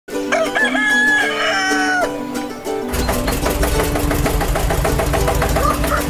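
A rooster crows once over sustained music chords. From about three seconds in, upbeat theme music with a quick, steady beat takes over.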